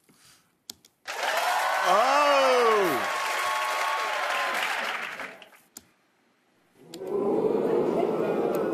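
Prerecorded crowd-reaction sound effects played from a button box on the desk. The first starts about a second in and lasts about four seconds, with a voice gliding up and then down in it. After a short gap a second one starts near the end.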